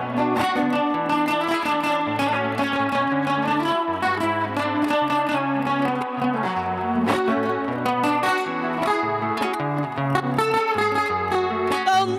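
Two acoustic guitars playing an instrumental passage of a Panamanian torrente in lamento style: a plucked melody over steady low bass notes that change about once a second.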